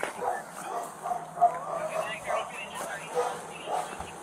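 A dog barking and yipping in a series of short barks, the loudest about a second and a half in.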